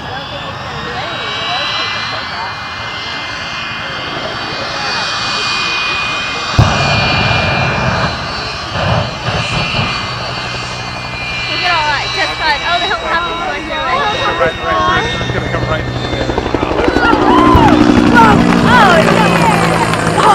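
High, steady jet-turbine whine, with a sudden loud bang about six and a half seconds in. A low engine and rotor drone builds toward the end as an AH-1 Cobra attack helicopter comes overhead, with voices over it.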